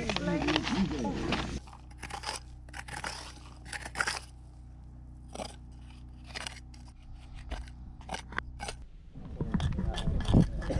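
A pointed masonry trowel scraping and clinking through loose, gravelly rock, heard as a run of short, sharp scratches and clicks over a faint steady hum. Voices are heard at the start and again near the end.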